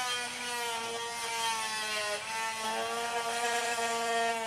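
Angle grinder with an abrasive disc grinding away rock matrix around a fossil, running with a steady whine that dips slightly in pitch about two seconds in as the disc bears on the rock.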